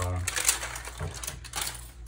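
Small cardboard trading-card box handled and opened by hand: a few scattered clicks and light rustles of cardboard and packaging.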